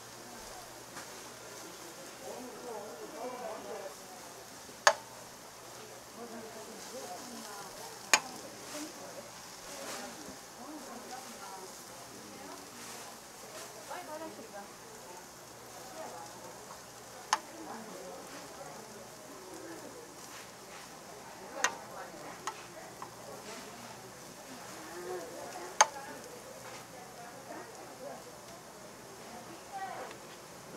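Strips of deodeok root sizzling as they fry in a nonstick frying pan, with sharp clicks every few seconds as metal tongs knock against the pan while turning them.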